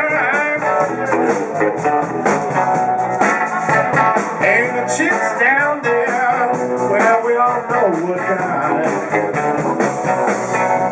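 A blues band playing live, with electric guitar over drums.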